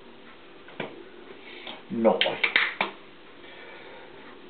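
A plastic squeeze bottle being squeezed over a frying pan. There is a faint click about a second in, then a quick run of sharp sputtering spits just after two seconds, as the bottle spurts out fat and air.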